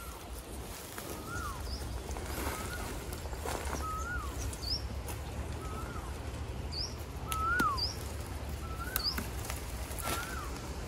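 A bird calling over and over, a short note that rises and then slides down, about once every second and a quarter. A second, higher short upslurred note comes in now and then, with a few faint clicks and a low rumble underneath.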